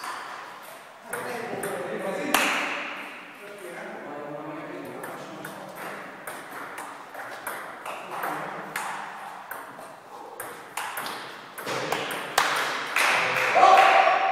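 Table tennis ball knocking back and forth between the bats and the table during rallies, a series of short sharp clicks.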